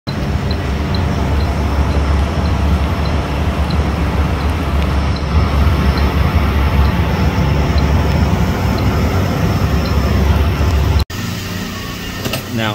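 Loud, steady, low rumble of air-moving machinery, as from walk-in freezer evaporator fans, with a faint high tick repeating about twice a second. The sound cuts off abruptly near the end.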